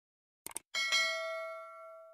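Subscribe-button animation sound effect: a quick double click about half a second in, then a bright notification-bell ding with several ringing tones that slowly fades away.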